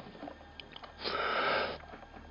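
One short sniff close to the microphone, a burst of breath noise lasting under a second about halfway through.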